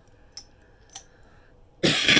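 A woman's cough, loud and sudden, breaking out near the end after a couple of faint clicks.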